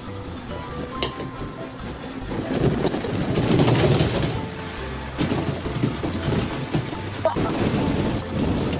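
A boxful of hollow plastic ball-pit balls pouring into a bathtub of soapy water, a dense clatter that swells to its loudest about three to four seconds in, followed by scattered knocks as the balls settle and are pushed around.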